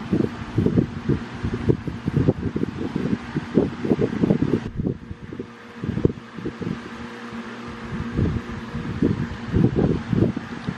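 Air buffeting the microphone: irregular low rumbling over a steady low hum, easing off briefly about halfway through.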